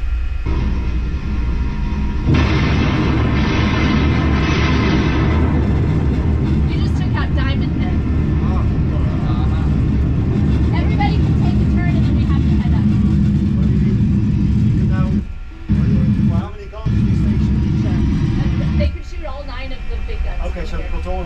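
Simulated 16-inch gun salvo played through the room's speakers as a firing demonstration: a loud blast about two seconds in, then a long heavy rumble with music and voices over it, dropping out briefly twice near the end.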